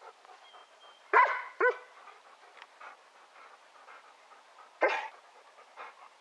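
A dog barking: two short barks just over a second in, then one more a little before the end.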